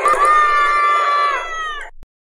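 A long, high-pitched cry held at one pitch for over a second, then sliding down and cutting off abruptly.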